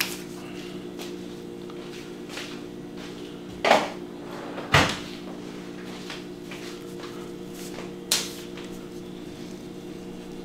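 Scissors cutting open a plastic shipping bag and being handled on a stainless steel table: a few sharp clicks and knocks, the loudest two near the middle, over a steady low hum.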